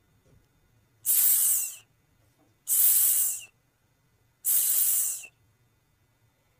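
A voice making the /s/ letter sound three times, each a drawn-out hissing 'sss' of just under a second, like a snake.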